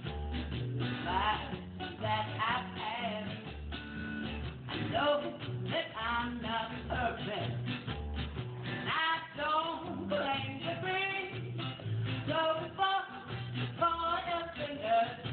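Acoustic ska: an acoustic guitar strummed in a bouncy rhythm over a plucked upright double bass line, with a woman singing.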